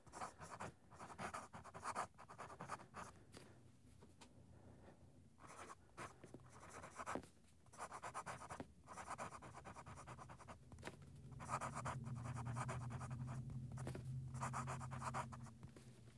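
Steel medium italic nib of a Conid Bulkfiller Regular fountain pen scratching faintly across paper in short stroke-by-stroke runs with brief pauses as letters are written. A low steady hum comes in about two-thirds of the way through.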